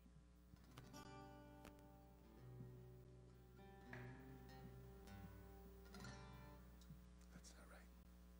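Acoustic guitar played softly: a few gentle strums about two seconds apart, with chords and single notes left ringing between them.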